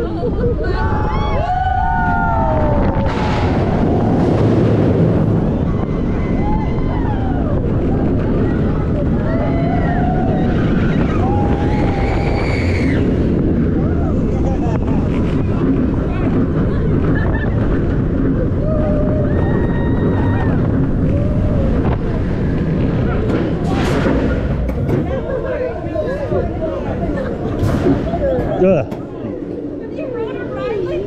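Riders screaming and yelling over a steady rush of wind and track noise as the SheiKra dive coaster's train plunges and runs its course. Near the end the noise drops off suddenly as the train slows onto the brake run.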